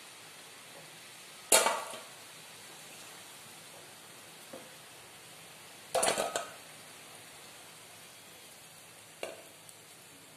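Hot oil sizzling steadily as bondas deep-fry in a kadai, with a perforated steel skimmer clattering against the pan three times: sharply about a second and a half in, a few quick knocks around six seconds, and a lighter one near the end.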